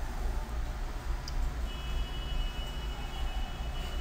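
Steady low hum and hiss of room and microphone noise, with a faint tick about a second in. A faint, thin, high steady whine joins from about two seconds in.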